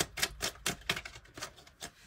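An Osho Zen tarot deck being shuffled by hand: a quick, irregular run of short card clicks and flicks, about six a second.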